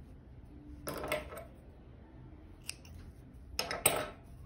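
Spring-loaded thread snips cutting yarn: a couple of quick snips about a second in, and another cluster of sharp snips near the end.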